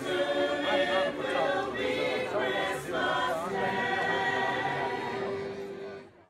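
Choir singing, with held, wavering notes in several voices.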